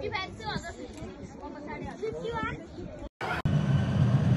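People talking for about three seconds; after a brief dropout, a loud, steady, low engine hum starts around a parked turboprop airliner.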